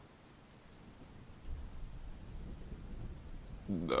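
Storm ambience: steady rain, with a low roll of thunder swelling in about a second and a half in and rumbling on.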